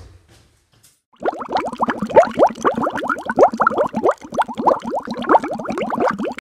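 Bubbling sound effect: a sudden, loud, rapid stream of short rising bloops that starts about a second in and keeps going.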